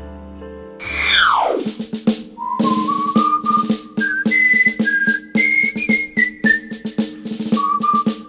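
Comedic background music: a falling whistle glide about a second in, then a whistled tune stepping up and down over a quick, steady snare-drum beat.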